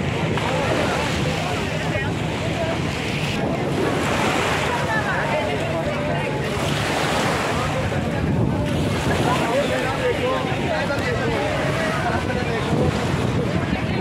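Crowded beach ambience: many voices chattering at once over the wash of small sea waves, with wind on the microphone.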